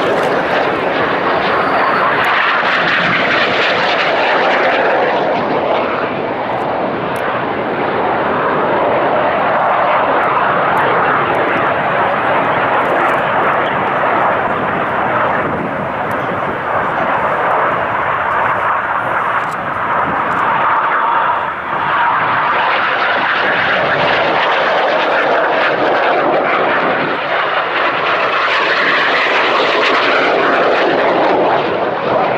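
Jet noise from the Red Arrows' BAE Hawk T1 jets and their Adour turbofan engines as they fly their display: a continuous loud rushing. It dulls through the middle and grows brighter again near the end as the aircraft come back closer.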